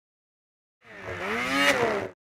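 Engine revving, used as a sound effect for a logo. It starts about a second in, dips in pitch, climbs to a peak and falls away, then cuts off right at the end.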